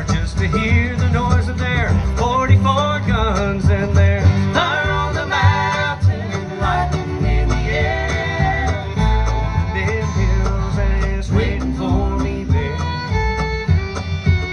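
Live bluegrass band of banjo, fiddle, acoustic guitar, mandolin and upright bass playing an instrumental break between verses, the fiddle leading with sliding notes over a steady bass line.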